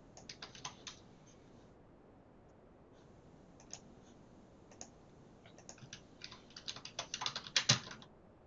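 Typing on a computer keyboard: a quick run of keystrokes at the start, a few lone clicks in the middle, then a faster, louder flurry of keystrokes over the last two and a half seconds.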